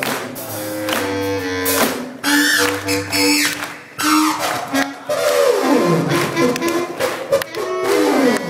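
Live band instrumental: a small handheld electronic instrument played with sliding, swooping pitches over held notes, with drums hitting underneath.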